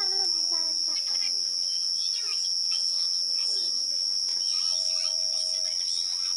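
A steady, high-pitched chorus of night insects, with faint voices talking in the background.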